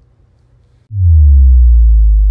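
A loud, deep electronic bass tone starts suddenly about a second in and sinks slightly in pitch: the sound of a logo sting.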